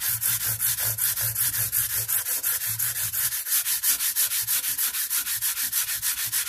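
Fret-crowning block covered in abrasive paper, rubbed rapidly back and forth over a guitar's steel frets: a dry, even rasping at about six strokes a second as the frets are crowned and polished.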